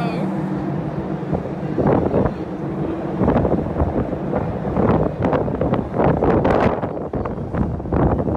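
Wind gusting across the microphone on an open ship deck, coming in uneven blasts, over a steady low hum.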